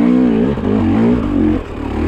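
KTM enduro dirt bike engine revving up and down under load on a steep climb, the pitch rising and falling several times and dipping briefly near the end.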